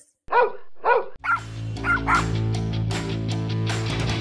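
A dog barks twice in quick succession, then intro music with sustained low notes starts about a second in, with a few more barks over it.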